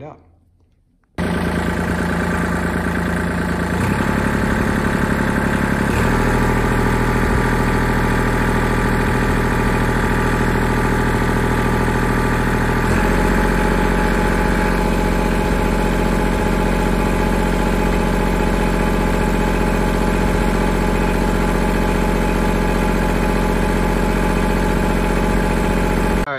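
Kubota D1703 three-cylinder direct-injection diesel in an L2501 tractor running steadily, with its injection timing advanced. It starts abruptly about a second in, and its pitch and character shift in steps at about 4, 6 and 13 seconds.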